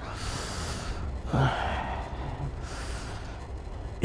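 A person breathing heavily in three noisy breaths, with a short grunt about a second and a half in.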